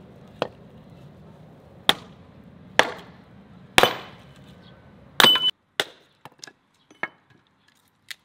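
Hatchet splitting birch kindling: five sharp chops at irregular intervals over the first five seconds, the loudest just before four seconds with a short ring after it. A few lighter knocks of wood follow.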